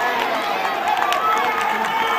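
Several people shouting and calling out at once, with overlapping voices, from players and spectators at a football match.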